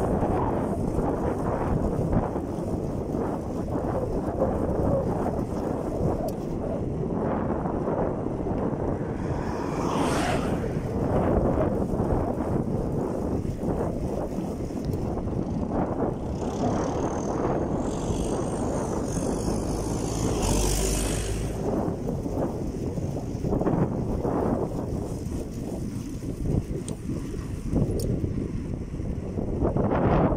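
Wind buffeting the microphone of a camera on a moving bicycle, a steady rushing noise. A brief louder, brighter rush comes about two-thirds of the way through.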